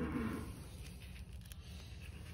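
A few faint scrapes of a hoof knife starting to pare the horn under a horse's heel, probing for an abscess, over a low steady hum.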